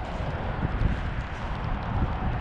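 Wind rumbling and buffeting on the microphone over a steady hiss of outdoor noise from the rain.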